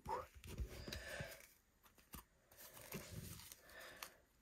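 Faint rustling and sliding of paper baseball trading cards as a stack is handled and flipped through, with a single soft tap about two seconds in.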